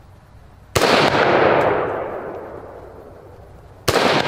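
Two shots from a Ruger SFAR .308 semi-automatic rifle with a muzzle brake, about three seconds apart. The first, a little under a second in, is a sharp crack followed by a rolling echo that fades over two to three seconds. The second comes right at the end.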